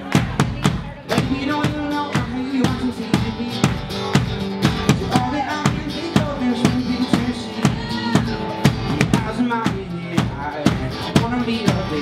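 Live band playing an acoustic song: an acoustic guitar strummed over a steady beat struck on a large drum, with a voice singing.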